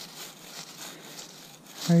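Faint crackly rustling of dry leaf litter as a metal detector's search coil is swept and handled over the ground, with no steady detector tone.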